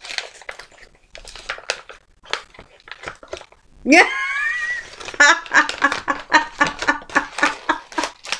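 Gift wrapping paper rustling and tearing as a parcel is unwrapped. About four seconds in, a woman gives a high exclamation that rises in pitch ("yeah"), followed by a run of laughter.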